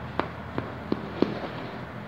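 A knife and fork clicking against an aluminium baking tray as a piece is cut from a gratinated bake: four short sharp clicks within about a second, then only faint background noise.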